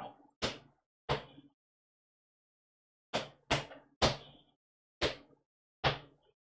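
Clogging footwork: shoes striking a concrete floor in rock steps and double toe steps. There are seven sharp strikes: two about a second in, then after a pause a quick run of three, then two more near the end.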